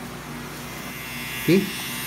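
Electric tattoo machine running with a steady buzz.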